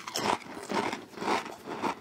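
A mouthful of stacked Pringles crisps being bitten and chewed: a run of crisp crunches, several a second.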